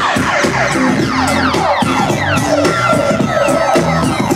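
Hip-hop DJ set played loud through a sound system: a drum beat under a run of quick falling pitch sweeps, several a second.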